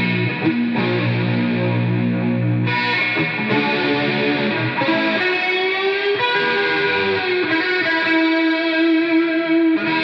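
Improvised heavy-metal solo on a distorted electric guitar, a Gibson Flying V, playing long sustained notes, with a slow bend up and back down about six seconds in.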